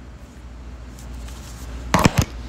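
Quiet room tone with a steady low hum, then a single short, sharp knock just before the end.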